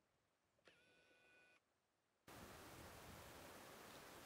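Near silence. A faint steady hiss of background comes in about two seconds in.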